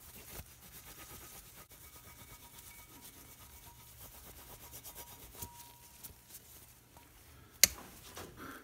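Microfiber rag rubbing over an aluminium rocker box cover, wiping off dried metal polish after buffing. It is a faint, uneven scuffing with small ticks, and one sharp click near the end.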